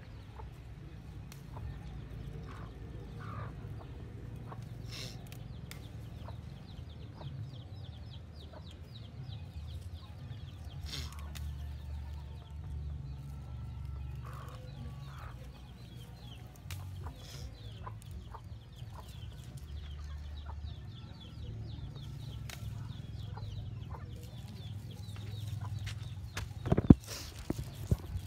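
Chickens clucking over a steady low rumble, with scattered small clicks. A loud sharp knock comes about a second before the end.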